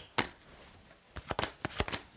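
Tarot cards being handled and laid down on a table: one sharp card snap just after the start, then a quick run of small clicks and taps about a second later.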